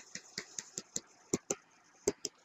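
Faint, irregular clicks, about four a second, from the input device used to draw a dashed line on screen, with two louder clicks a little after one second in.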